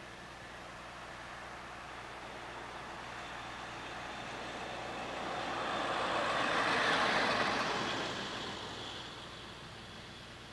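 A road vehicle passing by, its tyre and road noise growing louder to a peak about seven seconds in and then fading away.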